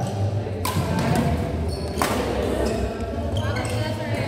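Badminton rally: rackets smacking a shuttlecock, two sharp hits about a second and a half apart with fainter clicks between, over background chatter and a low hum in a reverberant hall.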